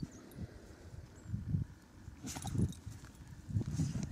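Wind buffeting the microphone: an uneven low rumble, with a brief louder rush a little past halfway.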